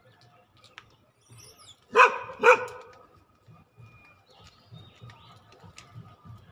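A dog barking twice, about half a second apart, around two seconds in.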